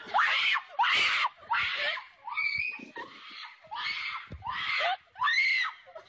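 A girl screaming in a string of about seven short, high-pitched shrieks, each about half a second long.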